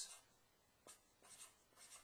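Felt-tip marker writing digits on paper: three faint, short strokes about half a second apart.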